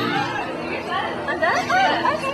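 Several people talking over one another: indistinct, overlapping chatter.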